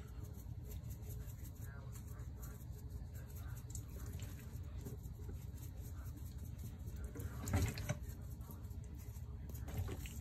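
Faint shaking of a spice shaker of smoked paprika over a raw turkey in a stainless steel sink, over a steady low hum. Brief louder handling noises of the turkey against the sink, one past the middle and one near the end as the bird is turned over.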